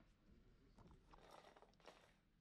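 Near silence: faint room tone, with a few faint brief rustles in the second half.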